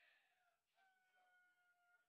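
Near silence: faint voices in the room, then a faint steady held tone in the second half that cuts off at the end.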